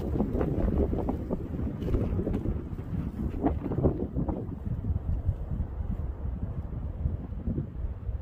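Wind buffeting the microphone: a gusty, low rumbling noise, strongest in the first half and easing off toward the end.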